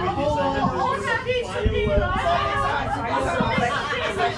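Several people chatting at once, their voices overlapping in a general conversation.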